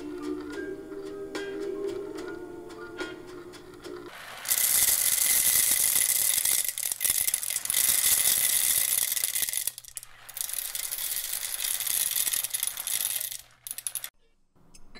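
A record playing music on a turntable for about four seconds. Then comes a loud, continuous rattling hiss of roasted coffee beans, broken by a short gap about two-thirds of the way through and cutting off just before the end.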